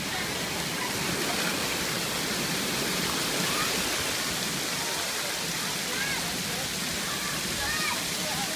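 Steady splashing rush of fountain water jets spraying into a swimming pool, with faint distant voices over it.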